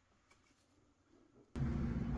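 Near silence, then about a second and a half in a steady room background with a low hum starts abruptly as a new recording begins.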